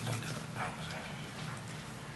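Faint, indistinct voices and small handling noises at a table over a steady low hum.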